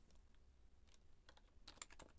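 Faint computer keyboard typing: a few scattered key clicks, then a quicker run of keystrokes in the second half as a word is typed.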